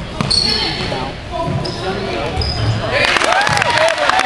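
A basketball bouncing on a hardwood gym floor as it is dribbled up the court, with short high squeaks of sneakers. From about three seconds in, spectators' voices and calls rise over it.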